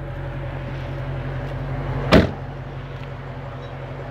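The trunk lid of a 2011 Dodge Challenger SRT8 being shut, one solid slam about two seconds in, over a steady low hum.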